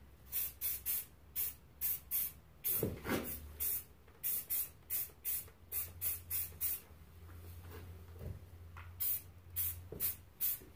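Aerosol spray paint can hissing out black paint in many quick short bursts, about three a second, a light misting coat over a rifle's camouflage pattern. The bursts stop for about two seconds near the end, then a few more follow.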